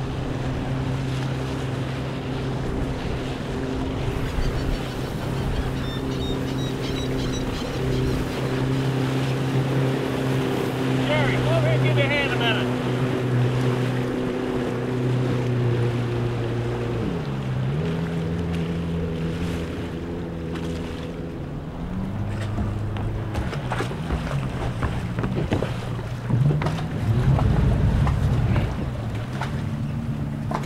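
A motorboat engine running steadily, then dropping in pitch a little past halfway as it is throttled back and running lower, with small changes in speed after that. A few knocks near the end.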